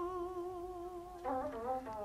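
A Vietnamese poetry chanter (ngâm thơ) holds the last word of a sung line as one long note that fades out about a second in. It is followed by a few quieter, short melodic notes.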